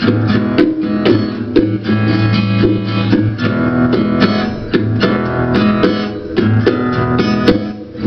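Acoustic guitar playing an instrumental blues passage, with bongos tapped along in time.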